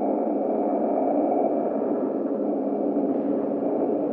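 Steady dark-ambient drone: a dense, low hum with faint held tones running through it, without a break.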